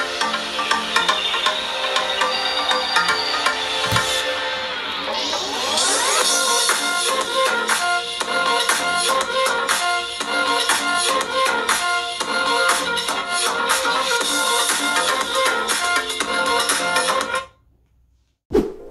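Electronic music with a beat played through a smartphone's built-in speakers, with a sweeping glide in pitch a few seconds in, then a steady rhythm, cutting off suddenly near the end.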